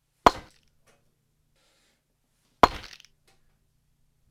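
Two sharp impacts about two seconds apart, each loud and sudden with a short ringing tail.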